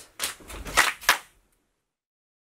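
A group of people clapping hands in a body-percussion rhythm, about four sharp claps roughly a third of a second apart, the last about a second in.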